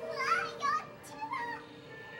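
Children's high-pitched voices, several short excited calls close together, over faint background music.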